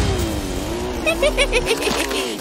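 Cartoon car engine sound effect running with a wavering hum as the toy car drives past. In the second half a quick run of short, chirpy blips is heard.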